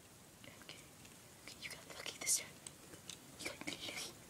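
Faint scattered clicks and rustles of a plastic Transformers Barricade figure's joints being twisted back into car mode, with soft whispering between them.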